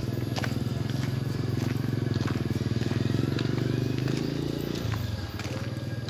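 A small engine runs close by with a steady, rapid low beat. It grows louder towards the middle and drops away about five seconds in.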